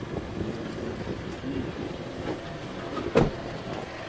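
Rustling and movement as a person climbs out of a car, with a single sharp knock about three seconds in.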